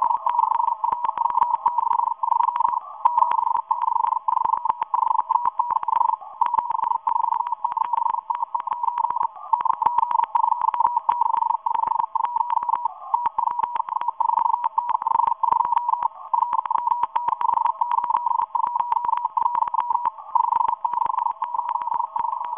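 Morse code from a Russian agents' shortwave station beamed at the USA, heard through a radio receiver: a single tone near 1 kHz keyed rapidly on and off with only brief pauses, with a fainter second tone below it.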